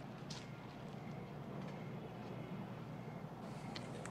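A car engine running low and steady as a car pulls up.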